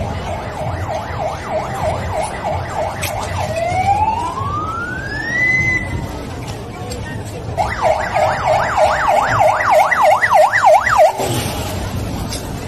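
Emergency vehicle siren sounding a fast yelp of about four sweeps a second, switching to one slow rising wail a few seconds in, then back to the fast yelp, louder, until it cuts off suddenly near the end.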